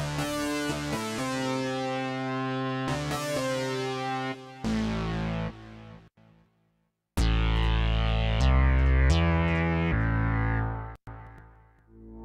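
Arturia Mini V software Minimoog synthesizer playing preset demo phrases: a bright lead melody of stepped notes on the 'Miami Lead' patch stops about six seconds in. After a short gap, a deeper phrase with heavy low notes plays from about seven seconds, and near the end a new tone swells in slowly.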